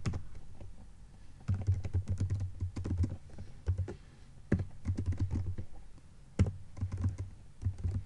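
Typing on a computer keyboard: runs of quick keystrokes starting about a second and a half in, broken by short pauses.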